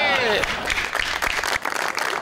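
Studio audience applauding, a dense run of many hands clapping that starts about half a second in as a voice trails off.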